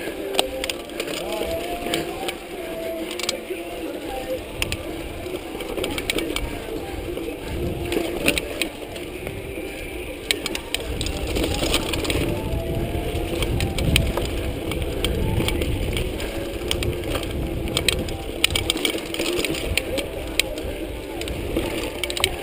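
Mountain bike ridden fast over a dirt singletrack: a stream of clicks and rattles from the bike jolting over roots and bumps, with tyre and wind rumble that grows heavier about halfway through and a wavering hum underneath.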